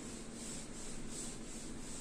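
Whiteboard being wiped clean by hand: quick, repeated rubbing strokes across the board's surface, a few a second.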